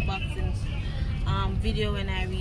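Steady low rumble of a moving car heard from inside the cabin, with a woman talking over it.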